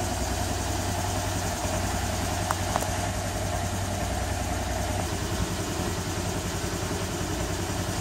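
Honda Air Blade 125 scooter's single-cylinder engine idling steadily, with two faint ticks about two and a half seconds in.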